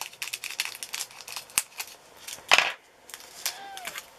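Small scissors snipping open a plastic bag of diamond painting drills, with many small clicks and plastic rustling and one louder snip or crackle about two and a half seconds in.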